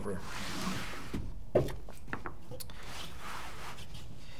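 Handling noise of a paintball marker being slid out of its padded gun case and set down on a table: rubbing, then a soft knock about one and a half seconds in and a few small clicks.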